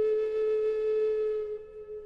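Background flute music: one long held note that fades away near the end.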